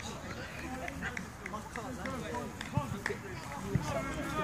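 Indistinct distant voices of players and onlookers on an outdoor football pitch, with a few short knocks, the last two near the end the strongest.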